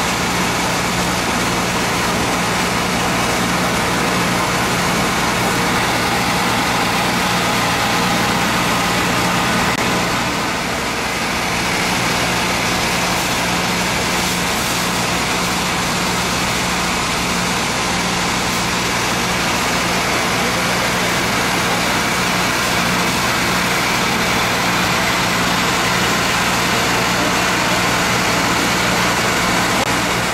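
A fire pump's engine running steadily at constant speed, with a steady low drone over a wash of noise, while it supplies water to the hose lines.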